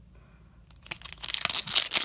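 Foil trading-card pack being torn open by hand, the wrapper crinkling and crackling. It starts about a second in after a quiet moment.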